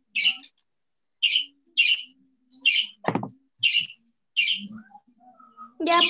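A small bird chirping over and over, short high calls about once a second. There is a single low thump about three seconds in.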